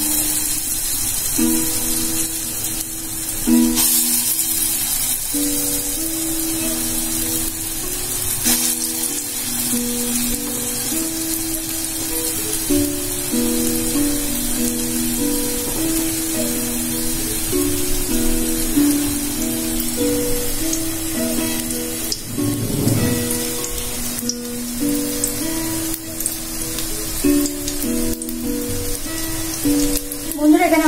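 Background music playing a simple melody of steady notes, over a faint sizzle of matar dal paste balls frying in oil in a wok.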